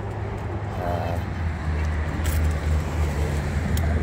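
Low, steady hum of an idling vehicle engine, dropping slightly in pitch about a second and a half in, over faint traffic noise.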